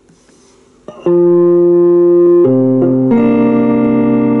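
Guitar plugged in through a DigiTech Talker pedal and PA, strumming three sustained chords starting about a second in, as a check that the guitar input gets a signal.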